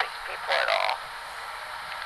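A dog giving one short vocal grumble about half a second in.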